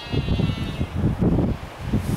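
Wind buffeting the microphone in gusts, with one long, drawn-out call from the albatross and penguin colony that fades out about a second in.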